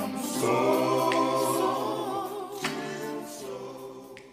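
Music with a choir singing sustained notes, fading out toward the end.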